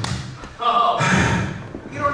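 A dull thud at the start, then a short burst of a man's voice over a microphone.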